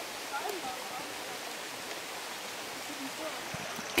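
Steady rush of a forest creek flowing along the trail, with faint voices in the distance early on.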